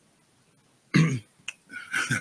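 A man clears his throat in a short burst about a second in, followed by a click and a softer throaty sound near the end.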